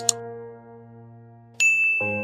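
Subscribe end-card sound effects: two quick clicks as the subscribe button is pressed, then a bright bell ding about a second and a half in that rings on, the notification-bell cue. Underneath, a soft music chord is held.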